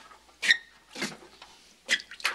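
Footsteps on a wooden floor: three steps roughly half a second apart, one with a brief squeak.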